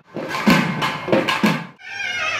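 Barrel drums of a naiyandi melam troupe beaten in a quick run of strokes that stops abruptly near the end.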